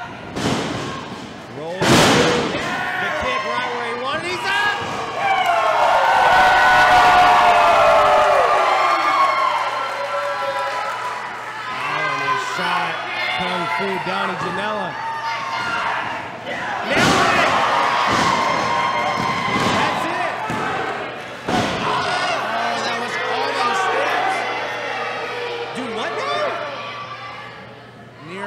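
Wrestlers' bodies hitting the ring canvas in sharp slams, about two seconds in and again in a cluster from about seventeen to twenty-one seconds. In between, fans in the hall shout and yell over one another, loudest from about five to nine seconds.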